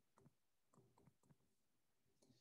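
Near silence with a few faint, irregular clicks of a stylus tapping and stroking on a tablet screen while handwriting.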